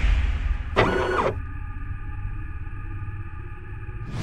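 Sci-fi sound effects for an animated logo intro: a short mechanical whoosh about a second in, over a steady low rumble and held synthesized tones.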